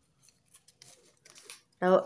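Scissors snipping through folded gift-wrap paper: a few faint, irregular cuts with a light paper rustle.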